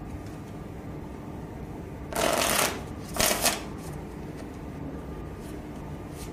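A deck of playing cards being riffle-shuffled by hand on a felt table: two short riffles about a second apart, over a steady background hum.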